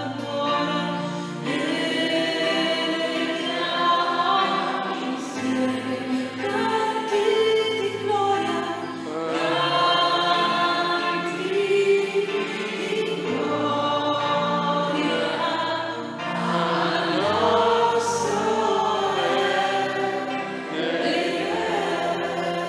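Church choir singing a sacred chant with several voices, over steady held low accompaniment notes.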